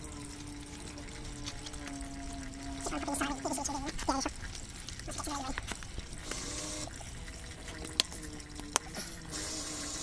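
Bicycle tyre being pushed onto its rim by hand, the rubber scuffing against the rim, with two sharp clicks about a second apart near the end. A steady voice-like hum, then wavering tones, runs under it for much of the time.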